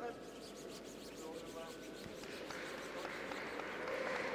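Curling brooms sweeping the ice in front of a sliding granite curling stone: faint, rapid brushing strokes over a hiss, with a faint shouted call from a player about a second in.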